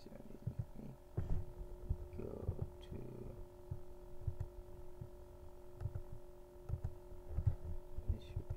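Steady electrical hum from a computer microphone setup, with several faint steady tones. Under it are irregular soft low thumps and a few faint clicks, from handling and mouse use near the microphone.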